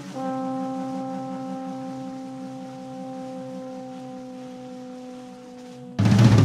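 Trombone and tenor saxophone holding one long note together. The main tone sags slightly in pitch, over a lower tone that pulses about four times a second.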